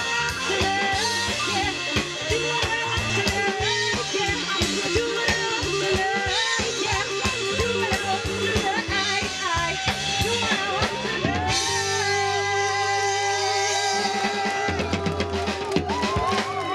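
A rock band playing live: drum kit keeping a steady beat under bass, guitar and singing. About twelve seconds in the beat drops away and sustained chords and a long wavering held note ring out, before drum hits come back near the end.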